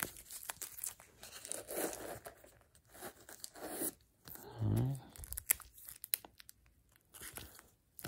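Rigid plastic card holders and sleeves rustling, clicking and scraping in irregular bursts as they are slid out of and sorted among the foam slots of a hard case. A brief low hum from a man's voice comes about halfway through.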